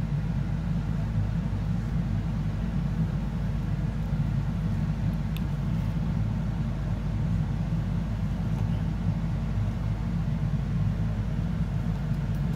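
Steady low hum with a faint click about five seconds in.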